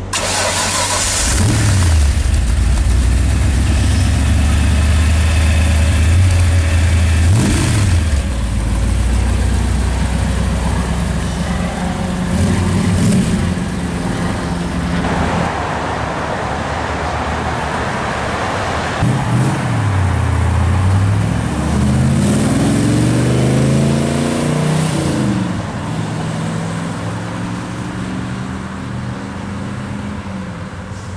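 De Tomaso Mangusta's Ford V8 running through its twin exhaust pipes, idling with a few quick throttle blips in the first half. About twenty seconds in, the engine revs rise and fall repeatedly as the car accelerates away.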